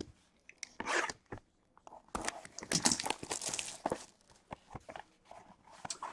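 Cardboard trading-card box and its packaging torn open and handled by hand: a short burst of tearing and crinkling about a second in, then a longer stretch from about two to four seconds, with scattered light clicks.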